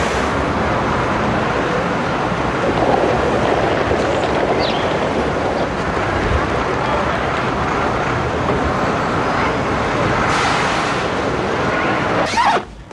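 Steady city traffic noise, a continuous even wash of road sound with no single vehicle standing out.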